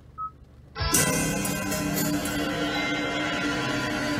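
A single short electronic beep from a car's touchscreen radio over near silence, then music starts about a second in and plays on steadily through the car's speakers.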